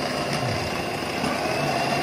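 Rajesh Stylish Stitcher domestic electric sewing machine running steadily, sewing an overlock stitch through fabric with an overlock foot.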